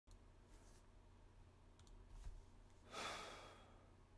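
A man sighs about three seconds in: a single short breath out that fades away. A couple of faint clicks come before it, over a low steady hum.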